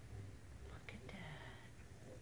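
A woman's brief, soft whisper about halfway through, over a faint low hum.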